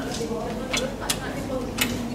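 Three sharp clicks from 10-metre air rifles along the firing line, the last the loudest, over background voices.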